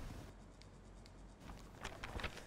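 Quiet room tone with light scratchy rustling and a few faint small clicks, mostly in the second half.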